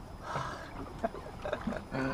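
A man breathing hard, with a breathy exhale and a few short grunts of effort, while reeling a heavy fish up from deep water on a bent rod.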